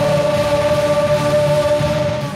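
Live rock band with electric guitars holding one long, steady final note, the singer's voice sustained over it.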